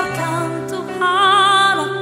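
A woman singing an Indonesian worship song into a microphone over instrumental accompaniment, holding a note with vibrato from about a second in.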